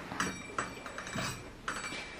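Door being opened by hand, with a few faint clicks and knocks.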